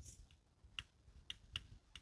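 Near silence broken by four faint, sharp clicks, unevenly spaced, in the second half.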